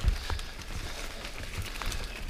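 Mountain bike rolling over a dirt trail, with a louder bump at the start. It goes on as a run of irregular low thumps and knocks with scattered clicks and rattles from the bike.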